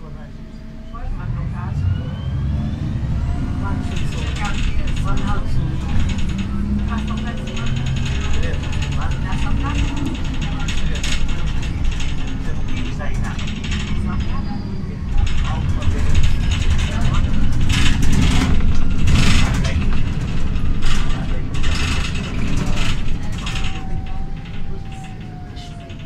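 Inside a 2007 MAN NL313 CNG city bus under way: the natural-gas engine and Voith automatic gearbox running with a low rumble, rising in pitch as the bus pulls away about a second in. The body panels and interior fittings rattle and clatter throughout, most heavily in the second half.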